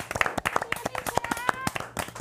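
A few people clapping their hands, quick irregular claps overlapping one another, with voices calling out over them.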